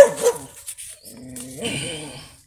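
Dog barking: two barks close together right at the start, the first the loudest, then a softer sound near the end.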